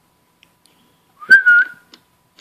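A short, loud, high whistle lasting about half a second, starting just after a sharp click a little over a second in.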